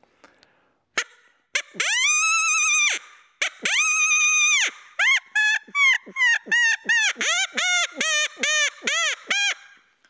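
Open-reed predator call (Knight & Hale Rogue Warrior) blown as a coyote howl: two long howls that rise and fall, then a quick run of over a dozen short yips that step down in pitch.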